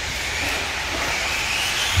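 1/10-scale short course RC trucks racing on a dirt track: a steady motor whine and tyre noise, with one whine rising in pitch over the second second.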